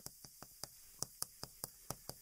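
Chalk tapping and clicking against a chalkboard while characters are written: a faint run of about nine short, sharp clicks at uneven spacing.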